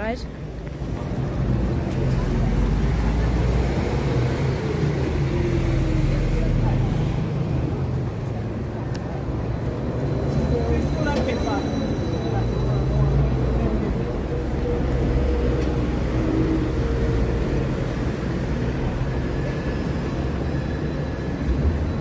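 Busy city street traffic: a steady low rumble of buses and cars going by, swelling and fading, with faint voices of passers-by.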